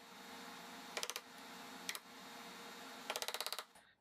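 Faint short bursts of rapid, evenly spaced clicking, about a second in, briefly near two seconds and again past three seconds, over a steady low hiss.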